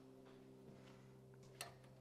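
Near silence: a faint steady low hum, with one soft click about one and a half seconds in.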